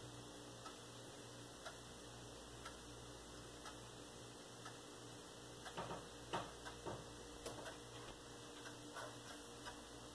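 Faint, even ticking about once a second, with a short run of louder clicks and knocks about six to seven seconds in, over a low steady hum.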